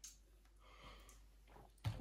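A faint sip and breath from a person tasting a cocktail, then just before the end a single sharp click as a stemmed martini glass is set down on the bar top.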